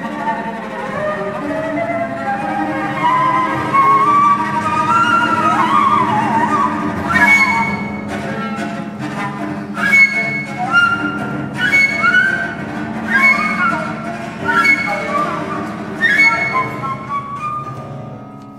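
Improvised chamber music: a cello holds a steady low note under winding flute lines. From about seven seconds in, short sharp accented notes sound roughly every second and a half.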